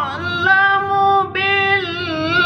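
A young man's high voice in melodic Quran recitation (tilawah), drawing out long, ornamented held notes with a brief breath-like break just past halfway.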